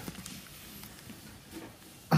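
A quiet pause with faint background noise and soft, indistinct handling sounds; no distinct event stands out.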